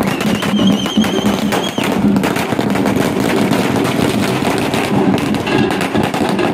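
A string of firecrackers going off in a rapid, continuous chain of sharp bangs. A shrill, wavering whistle sounds over it for the first two seconds or so.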